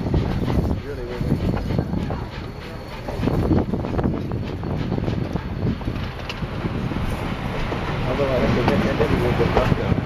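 Narrow-gauge steam train rolling along the track, heard from aboard one of its coaches: a steady rumble with scattered clicks of wheels over the rails. Passengers' voices join in, most of all near the end.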